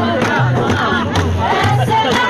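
A group of women singing a Kabyle folk song together, with hand clapping and the beat of frame drums (bendir).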